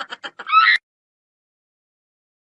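Comedy sound effect of a chicken clucking: a fast run of clucks slowing and fading, then one short squawk, cut off abruptly under a second in.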